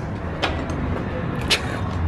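Heavy wooden door being pushed open, giving two sharp clicks about a second apart over a low, steady rumble.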